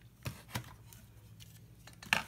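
Plastic LEGO pieces being handled, with two light clicks about a quarter and half a second in and a few fainter ticks after, over a low steady hum.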